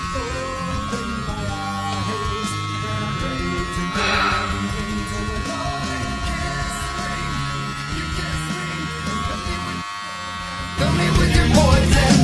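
Electric hair clippers buzzing steadily under background music. A little before the end the buzz stops and the music, a heavy rock track, gets louder.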